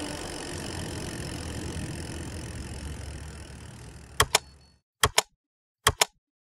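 Street and traffic ambience fading out over about four seconds, then a typewriter sound effect: sharp key clicks in pairs, about one pair every 0.8 s, one pair per letter typed.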